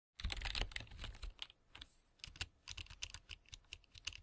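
Computer keyboard being typed on: faint, quick, irregular clicking.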